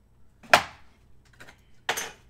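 Two sharp taps from a stack of trading cards being handled, about a second and a half apart, the first one louder.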